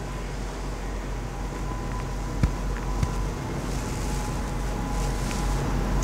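Steady low room hum with a faint thin tone, and two small clicks about halfway through.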